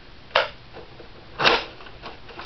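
Two sharp plastic clacks about a second apart from a Nerf Sonic Deploy CS-6 blaster, as its parts are pulled back and pushed into place to transform it from stealth mode into blaster mode.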